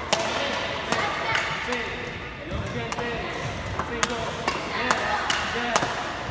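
Badminton rackets striking feathered shuttlecocks in a rapid multi-shuttle feeding drill: sharp, short hits coming about every half second.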